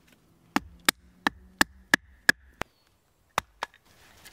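Sharp chopping knocks of a blade or baton striking into a wooden stick. There are about three strokes a second, seven in a row, then a short pause and two more.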